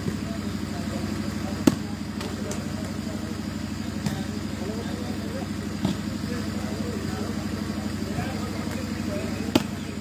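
A volleyball being struck hard four times during a rally, with the loudest hits about two seconds in and near the end, over background voices and a steady low engine-like hum.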